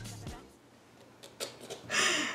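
Laughter dying away into a moment of near silence, then faint short breathy sounds as the laughing starts up again near the end.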